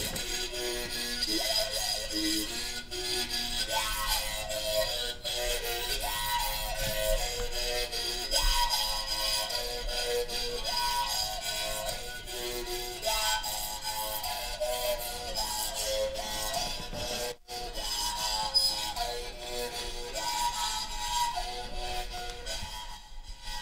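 Mouth-resonated musical bow played with a stick across its string, the mouth picking out a melody of shifting overtones in short, repeating phrases.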